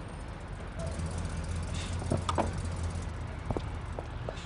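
A car running with a low steady hum that comes up about a second in and fades near the end, with a few faint clicks.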